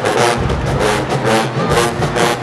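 College marching band playing a loud stand tune: full brass section with sousaphones, over a driving, evenly repeating drum beat.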